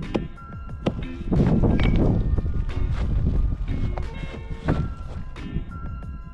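Background music over a few scattered dull knocks: a hammer chipping into the hard, dry earth of an abandoned ant hill. There is a rougher, louder scraping noise a little over a second in.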